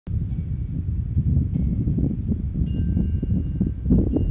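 Wind buffeting the microphone outdoors: a loud, uneven low rumble, with a few faint high tones in the background.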